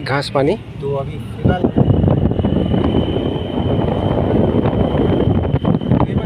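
Steady rumble of a moving vehicle's engine and tyres heard from inside the cabin, mixed with wind rushing over the microphone. It swells and stays loud from about a second and a half in, after a few spoken words.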